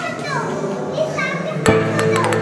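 High voices chattering, like children, then music starts abruptly about one and a half seconds in, with a sharp hit and held tones.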